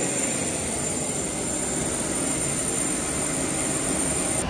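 Steady jet-turbine noise on an airport ramp: a continuous rush with a thin, high, unchanging whine over it.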